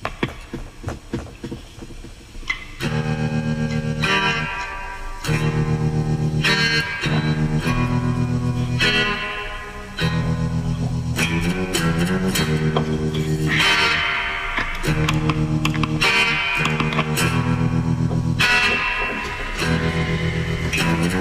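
Electric guitar played through an amp: soft picked notes at first, then loud ringing chords from about three seconds in, repeated in phrases with short breaks between them.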